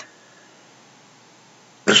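Faint steady room hiss with no distinct sound in it.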